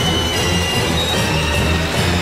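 Electronic dance music: a steady bass line under thin, high held synth tones, with no drum beat.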